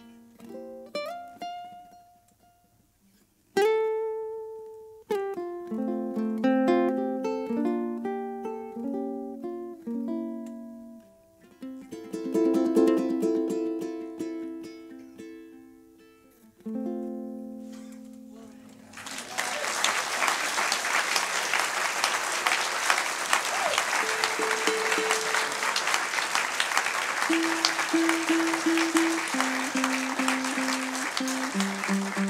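Solo KoAloha ukulele played fingerstyle, single plucked notes and chords ringing out and ending on a held chord. About two-thirds of the way through, audience applause breaks out and continues, with a few quiet plucked notes under it.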